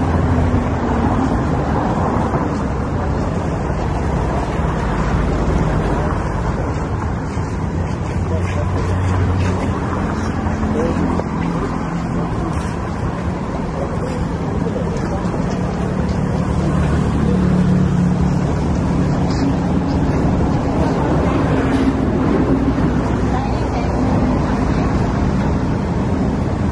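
Steady street traffic: vehicle engines running and passing on the road, a continuous low rumble with engine tones that drift up and down in pitch.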